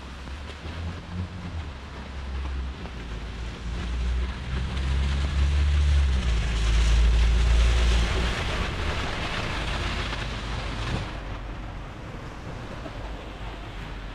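A city bus drives past on a rain-soaked street: a low engine rumble and the hiss of tyres on wet asphalt that build over several seconds, are loudest around the middle and then fade away.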